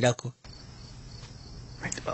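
A voice ends at the very start, then after a brief drop-out a faint, steady high hiss of background ambience runs until the next line of speech.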